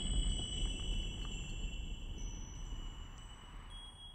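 The tail of a logo sting's soundtrack fading out: high sustained chime-like ringing tones over a low rumble, dying away steadily toward the end.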